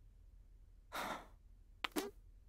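A woman's short sigh, a soft breath out about a second in, while she thinks of an answer. A small mouth click follows near the end.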